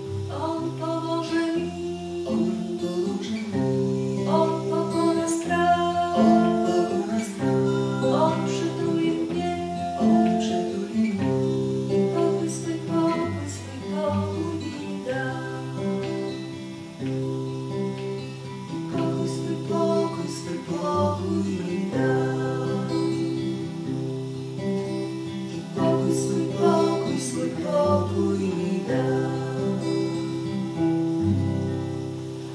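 Acoustic guitar strummed and picked in a slow song, with a woman singing along.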